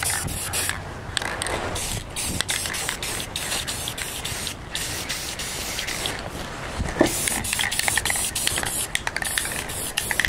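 Aerosol spray-paint can hissing in bursts with short pauses between them, as a rifle's base coat is touched up with paint. A single sharp knock sounds about seven seconds in.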